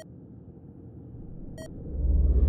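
Edited countdown sound effects: two short electronic beeps about a second and a half apart, over a low synthetic rumble that swells toward the end.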